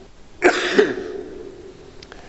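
A man coughing twice in quick succession into his hand, close to a handheld microphone: two short, rough coughs about half a second apart, the first the louder.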